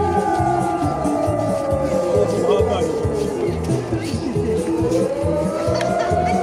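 Dance music with a steady beat, about two beats a second. Over it a long high tone holds, slides down in pitch over a few seconds, then rises back up near the end.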